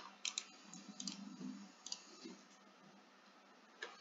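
A handful of faint computer mouse clicks scattered over a few seconds, with quiet room hiss between them.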